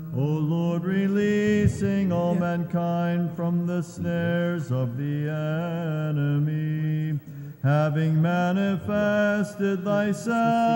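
Byzantine liturgical chant: a male chanter sings an ornamented, melismatic line over a steady held low note (an ison drone). There is a short break about seven and a half seconds in before a new phrase begins.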